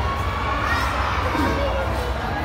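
Crowd din of many children's voices shouting and chattering at once, steady throughout, over a steady low hum.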